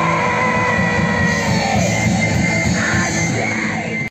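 A punk band playing live, loud and steady throughout, with electric guitar, drums and a voice over them.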